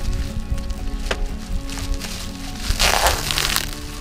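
Plastic stretch wrap crinkling and crackling as it is pulled off a bundle of long trim strips, with a sharp click about a second in and the loudest crackling burst about three seconds in. Background music plays throughout.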